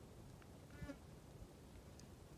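Near silence, with one brief faint pitched call just under a second in.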